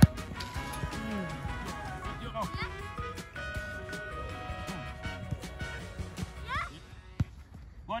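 A football kicked once at the very start, a sharp thud, followed by music with voices under it. A second brief knock comes near the end.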